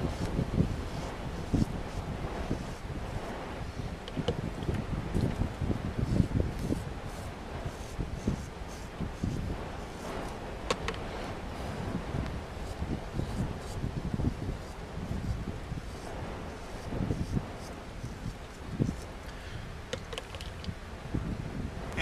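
Strong gusting wind buffeting the microphone, a rumbling, uneven rush that rises and falls.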